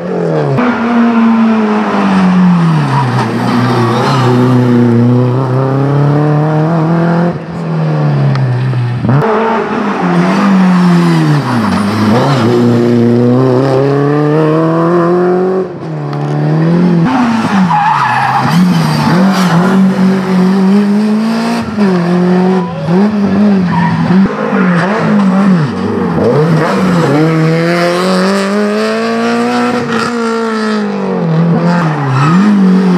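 Rally cars' engines revving hard on a special stage. The pitch climbs and falls again and again as the cars accelerate, shift and lift for corners.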